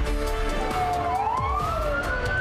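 Emergency-vehicle siren wailing: a held tone that glides up in pitch about a second in and stays high, with a second tone falling at the same time. Background music plays underneath.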